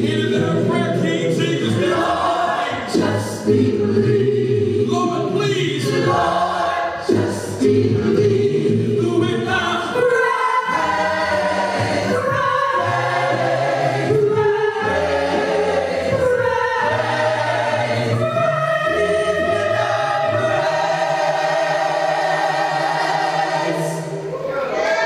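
Large mixed choir of men, women and children singing a gospel hymn a cappella in parts, holding one long chord near the end.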